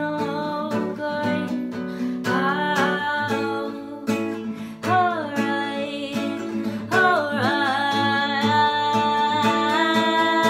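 Acoustic guitar strummed steadily under a woman singing a slow melody in long held notes, in three phrases.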